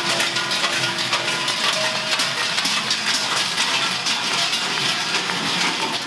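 Many large cowbells worn by Krampus runners clanging and jangling together in a dense, continuous metallic clatter, with a few ringing tones showing through; it cuts off suddenly just after the end.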